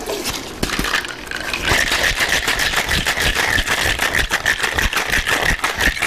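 Cocktail shaker being shaken hard, ice rattling inside in a fast, even rhythm as a milk-based punch is mixed and chilled.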